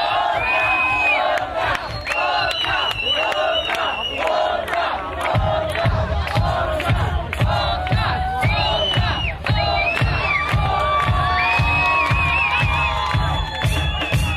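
Audience cheering and shouting at a live outdoor concert, with high held shouts over the crowd noise. From about five seconds in, the band's steady drum beat comes in underneath.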